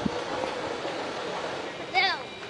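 Indistinct voices chattering over a steady outdoor noise, with a short low thump right at the start.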